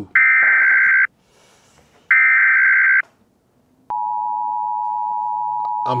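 Telephone sound effect: two one-second electronic rings about a second apart, then a click and a steady, unbroken telephone-like tone that keeps going, used as a deliberately annoying attention-getter.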